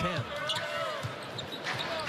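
Basketball dribbled on a hardwood court, a run of bounces at about two to three a second.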